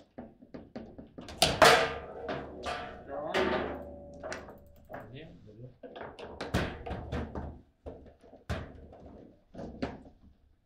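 Foosball table in play: quick sharp knocks and thunks of the ball against the plastic figures, rods and table walls, scattered through the whole stretch. The loudest hit comes about a second and a half in, around when a goal goes in.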